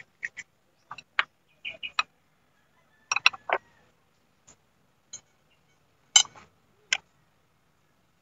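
A scattered series of short clicks and taps, about a dozen, spaced irregularly with silence between them.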